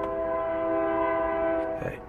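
Train horn sounding one long, steady blast, a chord of several notes held together, which cuts off shortly before the end.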